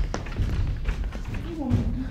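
A low thump and a sharp tap right at the start, then scattered low thuds: a stage sword, a long stick, being thrust at a wooden bed during a stage fight with the bed, with stage footsteps.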